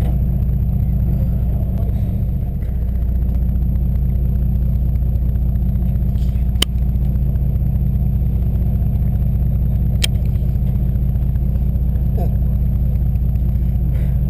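Sportfishing boat's engine running with a steady low drone, heard through the housing of a GoPro mounted on a fishing rod. Two sharp ticks, one about halfway through and one a few seconds later.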